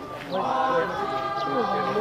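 A group of Naga dancers, men and women, chanting a traditional song together in long, held notes. The singing swells in about half a second in, and a low held note joins near the end.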